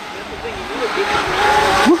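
Two small RC jet boats running across shallow water: a thin high motor whine over a hiss of water and spray, growing louder as they come near.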